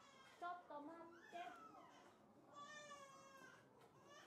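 Faint, high-pitched children's voices: several short calls with rising and falling pitch in the first second and a half, then one longer, drawn-out call about three seconds in.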